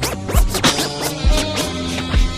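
Chopped-and-screwed hip-hop beat with no vocals: deep kick drum hits and held notes, with turntable scratching sweeps laid over them.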